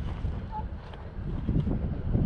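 Gusty wind buffeting the camera's microphone: an uneven low rumble that rises and falls with the gusts.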